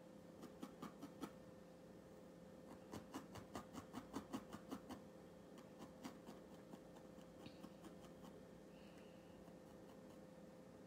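Faint, quick clicks of a barbed felting needle stabbing through wool into a foam pad, several pokes a second and busiest around the middle, over a faint steady hum.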